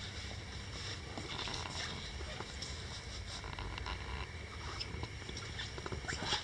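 Quiet room tone: a steady low hum with a faint high whine over it and a few faint ticks and scuffs.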